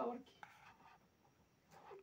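Faint, brief scratching of a marker pen on a whiteboard, about half a second in.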